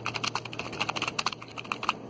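Keyboard typing sound effect: a rapid, uneven run of key clicks as text is typed out on screen.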